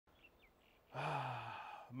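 A man's long, breathy, voiced sigh, starting about a second in with a falling pitch and fading away.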